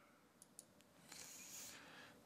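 Near silence: quiet room tone with a couple of faint ticks in the first second and a faint hiss in the second half.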